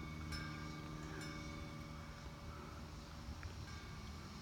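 Faint outdoor background with a steady low hum that fades out about halfway through, and a few small ticks.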